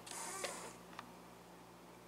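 A brief scraping rustle of something being handled, then a single click about a second in. A faint steady electrical hum runs underneath.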